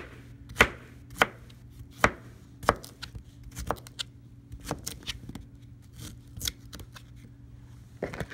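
Chef's knife chopping pineapple into chunks on a plastic cutting board, each stroke a sharp knock of the blade on the board. The knocks come unevenly, about every half second to a second, and are loudest in the first three seconds.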